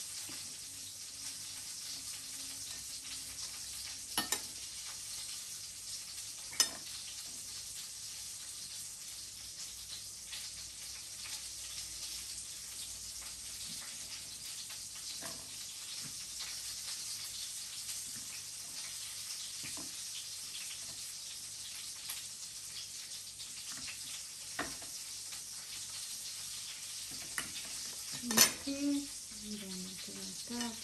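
Kitchen knife scraping meat off chicken wing pieces on a ceramic plate over a steady hiss, with a few sharp clicks of the blade against the plate. Near the end the knife clatters as it is set down on the plate.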